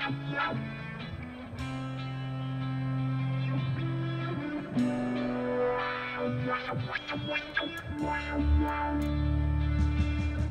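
Guitar-led instrumental music played through an op-amp bridged-T peak filter. A potentiometer sweeps the filter's resonant peak downward from the mid-range into the bass, giving a wah-like sweep. In the last couple of seconds the low bass is strongly boosted.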